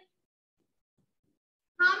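Near silence, then a woman starts speaking sharply near the end.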